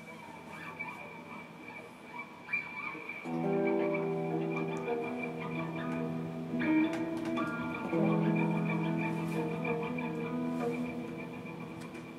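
Two electric guitars played through an amplifier in a free improvisation: sparse, scattered notes over a steady high held tone, then sustained chords swell in about three seconds in and again about eight seconds in, fading gradually near the end.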